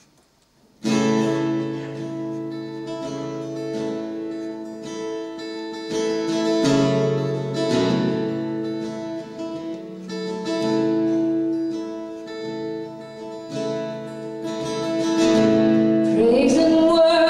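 Acoustic guitar playing the slow introduction to a country ballad: sustained, ringing chords that change every few seconds. It starts about a second in, after a brief silence.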